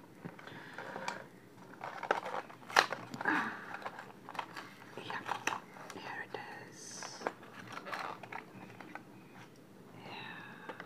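Die-cast car blister pack being torn open by hand: cardboard backing ripping and the plastic blister crinkling and cracking in irregular sharp snaps.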